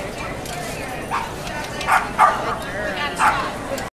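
A dog barking about four times in short, sharp barks over steady crowd chatter.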